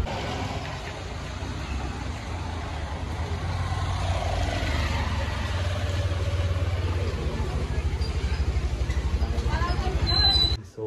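Honda Activa scooter's single-cylinder engine running steadily as it rides along, growing gradually louder through the stretch. Voices come in briefly near the end.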